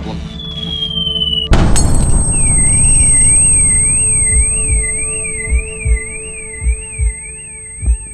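Added sound effects: a falling whistle, then a sudden loud crash of breaking glass about a second and a half in. A warbling electronic alarm follows, rising and falling about twice a second over a steady high tone. Paired low thumps like a heartbeat come near the end.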